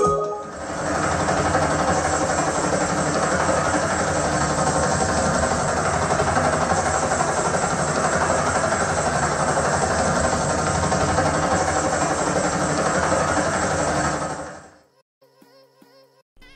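Helicopter rotor and engine sound from a Dolby Atmos helicopter demo, played back through a Sony HT-Z9F soundbar and its wireless subwoofer; a loud, steady drone with deep bass builds in about half a second and fades out just before the end.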